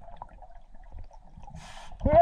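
Muffled underwater quiet with faint clicks, then a short hiss near the end as the scuba diver draws a breath through his regulator.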